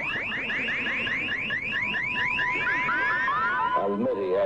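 Electronic time-machine sound effect: a fast, even run of rising whooping sweeps, about six a second, over a steady high tone. Near the end the sweeps bend into falling tones and a lower wavering tone comes in.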